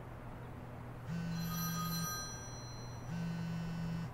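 Telephone ringing: two rings of about a second each, a second apart, each a buzzy electronic tone.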